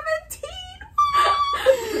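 Women laughing and making playful vocal noises. About halfway through comes a high, drawn-out squeal, held steady for about half a second.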